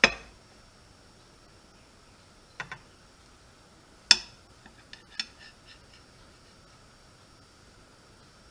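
Knife blade clinking against a ceramic plate while a soft frosted cake is sliced: two light taps, a sharp clink about four seconds in, then a run of lighter clicks.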